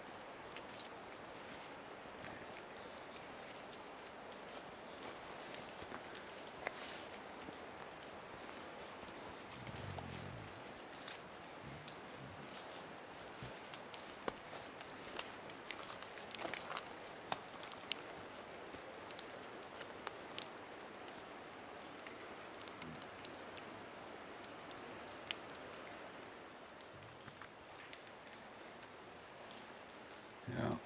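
Footsteps on a rocky, leaf-littered forest trail, with irregular crunches and clicks over a faint steady rush of river water.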